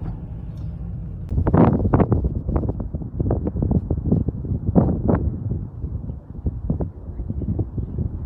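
Wind buffeting the phone's microphone in irregular gusty thumps outdoors. It follows a second or so of steady low car engine and road rumble heard from inside the cabin.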